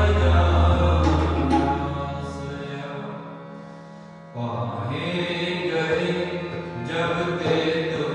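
Sikh kirtan: two Crown Flute hand-pumped harmoniums playing sustained chords, with chanted singing. The sound thins and fades about halfway, then the harmoniums and voices come back in strongly.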